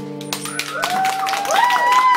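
Audience clapping and whooping as the song ends, starting about a third of a second in, while the last acoustic guitar chord rings out underneath.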